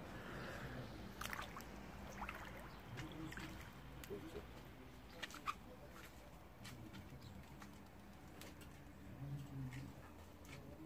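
Faint outdoor ambience around an above-ground pool, with gentle water movement and a few short, sharp splashes and chirps, the sharpest about five and a half seconds in.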